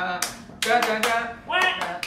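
A man clapping his hands, with men's voices over the claps.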